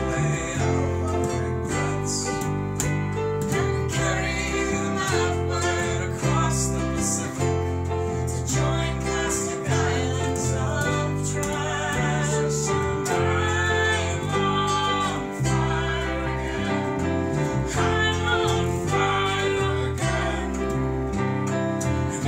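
Amateur band playing a pop-rock song live in a room: strummed acoustic guitar, electric bass guitar and digital keyboard, with a woman singing at times.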